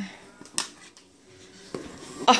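Small metal gift tin having its lid prised off, with a sharp click about half a second in and a softer one near the end.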